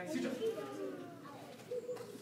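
Indistinct voices: people in the room talking in low murmurs, with no clear words.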